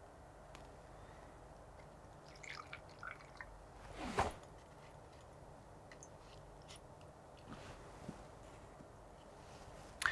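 Faint pouring and dripping of a muddy water mixture from a small glass beaker into filter funnels lined with cotton wool and paper, with one brief louder sound about four seconds in.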